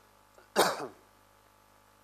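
A man clears his throat once, briefly, about half a second in, with a short falling vocal sound; otherwise quiet room tone.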